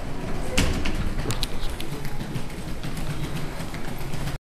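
Footsteps and handheld-camera handling noise while walking across a tiled floor, with one sharp thud about half a second in and a few light clicks soon after.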